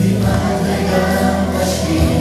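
Children's choir singing a Hebrew song over a steady instrumental backing track, held notes flowing without a break.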